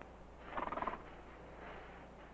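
Dog growling briefly about half a second in, a short rough rattling sound, with a fainter one following.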